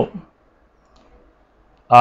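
A man's speaking voice trailing off, then a pause of near silence with only faint tiny clicks, and the voice starting again near the end.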